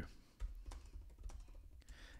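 Faint typing on a computer keyboard: a run of irregular key clicks as a short sentence is typed.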